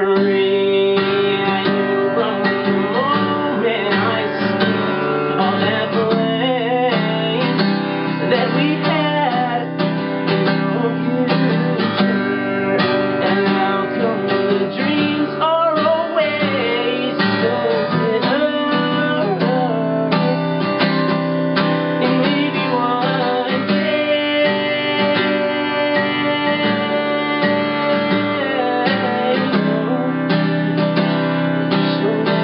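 Acoustic guitar strummed steadily, with a male voice singing a melody over it.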